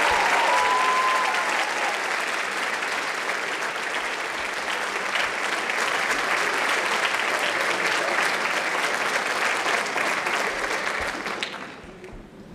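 Audience applauding, a steady clatter of many hands clapping that dies away near the end.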